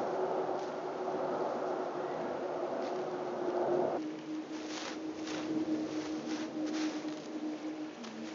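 Steady drone of a distant engine, its pitch dropping slightly about halfway. In the second half come a few soft, scratchy rustles of weeds being pulled from loose soil by gloved hands.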